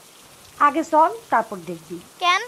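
Steady hiss of rain falling through the trees. About half a second in, a woman's voice says a few short words over it.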